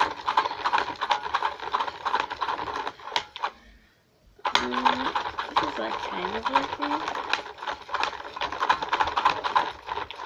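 Toy spin art machine's small battery motor spinning the paper tray with a rapid, loud rattling clatter. It stops for about half a second around four seconds in, then starts again, as the spin button is let go and pressed again.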